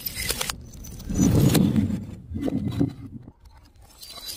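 Flames rushing up from a burning balloon: a sharp crackling burst at the start, then a loud, low whooshing gust and a second, smaller one.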